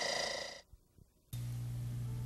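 A steady hum with a high whine cuts off suddenly about half a second in, followed by a moment of silence. Then a low steady hum with a few faint held tones starts.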